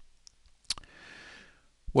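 A single sharp mouth click, then a short soft breath in lasting under a second.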